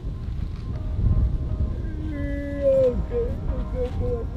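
Gusty wind buffeting the microphone, a heavy low rumble that swells about a second in. Background music comes in under it.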